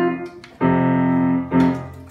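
Grand piano being played: a chord dies away, a new chord is struck about half a second in and held, and another follows near the end.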